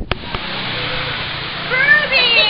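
Steady background noise, then near the end a high-pitched, rising vocal cry, like a woman's excited squeal.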